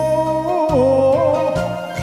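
Enka song music: a wavering melody line over the backing track's low bass, which breaks off briefly twice.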